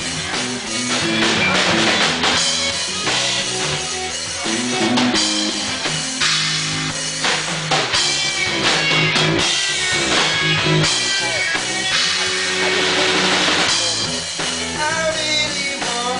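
Live rock band playing an instrumental passage without vocals: electric guitar, bass guitar and drum kit.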